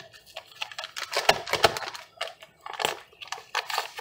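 Paper gravy-mix packets being handled, an irregular run of crinkling and rustling with sharp crackles.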